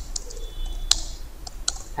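Computer keyboard typing: a handful of separate keystrokes at irregular spacing as a short line of text is typed.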